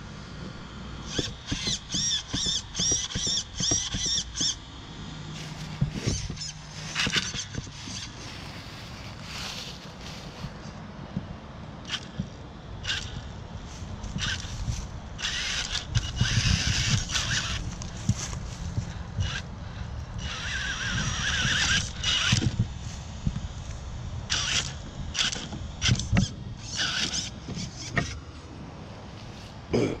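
Castle 3850kv brushless motor of an RC rock racer whining in short bursts of throttle, rising in pitch a few times, with scattered knocks and clatter as the truck's tyres and chassis bump over wooden slats.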